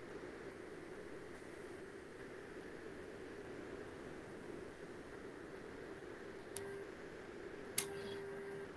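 Faint, steady room noise with a low hum, broken by two short clicks near the end, the second one sharper.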